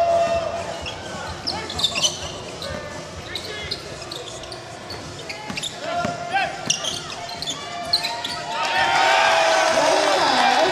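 Basketball dribbled on a hardwood court, with sneakers squeaking and players calling out in a reverberant gym hall. The voices grow louder near the end.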